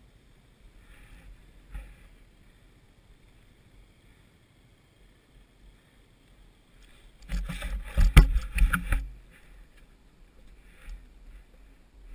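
Slushy broken ice and icy water splashing and crunching as a rider's leg moves through them. A loud run of knocks and splashes lasts about two seconds, a little past the middle.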